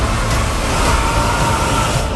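Film-trailer sound design playing back: a loud rushing, rumbling noise with a steady high ringing tone running through it.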